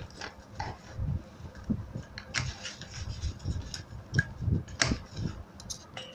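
Sewing machine stitching PVC leather and lining fabric slowly, with light irregular ticks and knocks from the mechanism.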